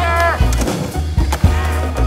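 Skateboard rolling on stone paving, with a few sharp clacks from the board in the second half, under a music track with a steady bass line.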